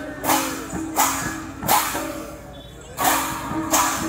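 Kirtan percussion: large brass hand cymbals clashed in a steady beat, about one ringing clash every 0.7 seconds, over double-headed clay barrel drums. The clashes drop away for about a second around the middle, then come back in.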